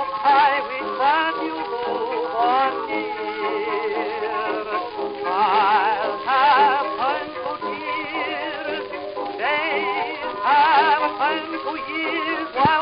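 Instrumental passage of a 1920s dance-orchestra record: melody instruments play with a wide vibrato over held accompanying chords. The old 78 rpm transfer has a dull, cut-off top.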